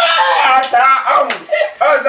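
Loud, high-pitched women's voices laughing and exclaiming, with a sharp hand smack about a second and a half in.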